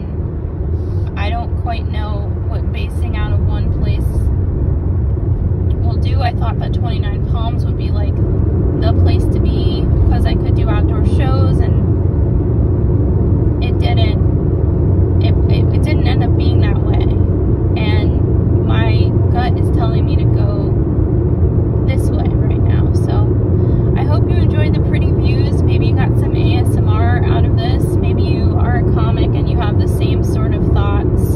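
Steady low road and engine rumble inside a moving Hyundai car, with a voice talking over it throughout.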